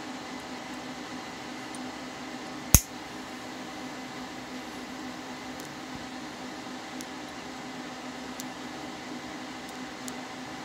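A single sharp snip about three seconds in, as wire snippers cut across the end of a laptop keyboard's flat ribbon cable to trim off its corroded contact pads. A few faint ticks follow, over a steady low hum.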